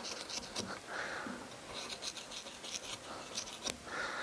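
Hand wood-carving tool cutting fur texture into a carved wooden animal figure: a rapid series of faint, short, scratchy cuts coming in several quick runs.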